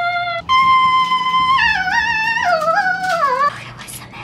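A short, high-pitched melody: a brief note, then a long held high note that breaks into a wavering run stepping downward, cutting off suddenly about three and a half seconds in.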